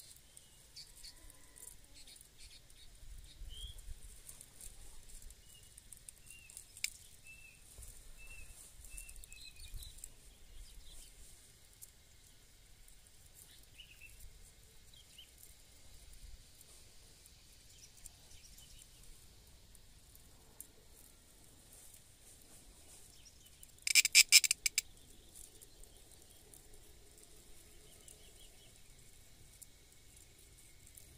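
A cicada buzzing in a rasping burst about 24 seconds in, lasting about a second and by far the loudest sound. Faint, short bird chirps come now and then in the first ten seconds.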